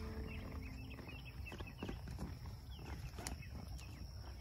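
A saddled horse standing and shifting in a grassy pasture, with a few soft knocks from its movement, over many short, high chirps.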